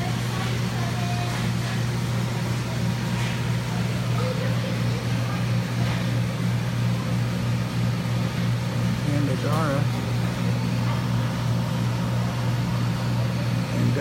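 Steady low electrical hum of running equipment in a fish store full of aquarium tanks, unchanging throughout, with faint voices in the background about nine and a half seconds in.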